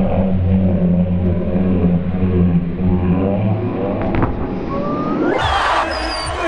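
Heavily muffled soundtrack, filtered so that almost only the low range is left: a deep, sustained bass hum. The muffling lifts about five seconds in and the sound brightens back to full range.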